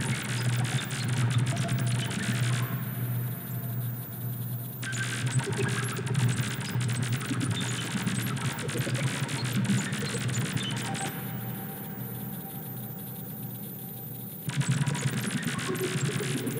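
Experimental electronic music from analog modular synthesizers and tape: a dense, clicking, crackling noise texture over a steady low drone. The upper range is filtered away twice for a few seconds, about three seconds in and again about eleven seconds in, and the full texture cuts back in abruptly near the end, louder.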